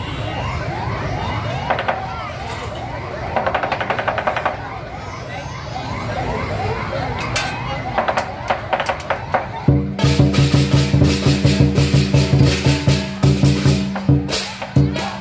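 Lion dance percussion: crowd noise with a repeated rising whine and two short rattling rolls, then about ten seconds in the big lion drum, cymbals and gong strike up a loud, steady beat.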